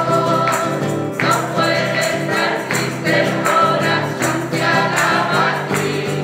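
A woman singing a devotional song while strumming chords on an acoustic guitar.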